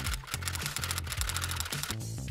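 A quick run of typewriter key clicks over background music with low bass notes.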